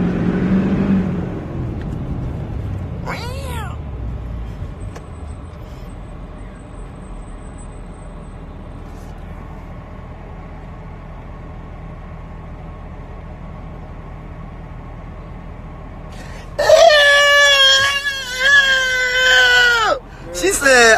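A low vehicle rumble fades over the first couple of seconds. A short rising-and-falling cry comes about three seconds in. Near the end a loud, drawn-out cat meow of about three seconds wavers in pitch and falls away at its close.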